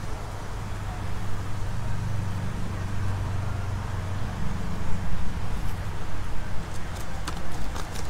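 A hand cultivator's tines scratching lightly through loose, freshly turned garden soil, over a steady low rumble that swells and fades. A few sharp clicks come near the end.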